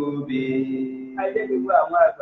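A man chanting in a drawn-out, sing-song voice, holding one long steady note for over a second before breaking into quicker syllables.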